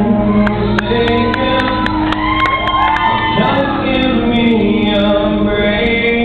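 Live solo acoustic performance: a male singer holding long sung notes over a strummed acoustic guitar, heard in a large hall.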